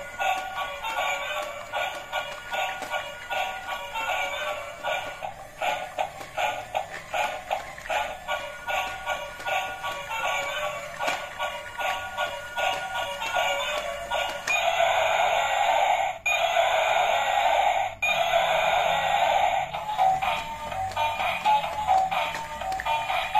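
Battery-powered dancing dinosaur toy playing its built-in tune through a small speaker: a tinny electronic song with almost no bass, in a steady beat, turning louder and fuller for a few seconds past the middle.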